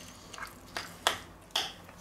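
A spoon stirring a thick, creamy dip in a ceramic bowl: about four short, soft clicks and scrapes of the spoon against the bowl spread over two seconds.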